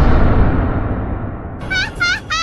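End-card sound effects: a deep boom rumbles and dies away, then about a second and a half in a string of short, high, squeaky calls starts, about three a second, each bending in pitch.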